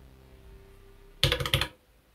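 The last note of an Elektron Digitone synth track dying away, then a quick run of loud clicks about a second and a quarter in.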